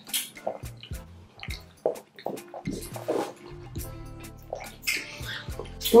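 Wet, sticky squelching, smacking and chewing clicks of fufu and slimy ogbono soup being eaten by hand, over quiet background music.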